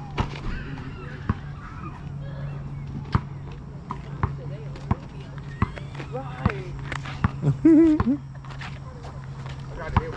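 Basketball bouncing on an asphalt court, single dribbles about a second apart, over a steady low hum. A voice calls out loudly about three-quarters of the way through.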